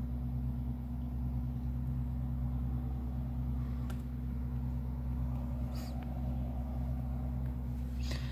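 Steady low mechanical hum from indoors, made of several fixed low tones, with faint muffled road traffic through the window glass and no siren audible.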